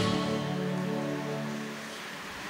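The last held chord of a closing hymn dying away over nearly two seconds, leaving only faint room noise.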